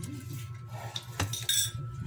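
Metal forks and spoons clinking against plates as noodles are picked up and eaten: a sharp clink a little past the middle, then a brighter clatter shortly after.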